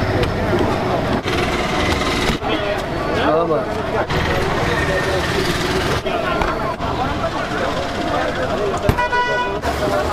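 Busy street ambience with background voices and traffic, and a vehicle horn tooting once, for about half a second, near the end.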